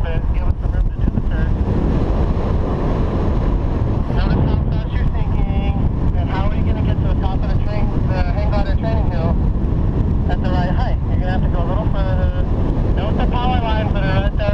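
Wind rushing over the camera microphone of a paraglider pilot in flight: a loud, steady low rumble that does not let up.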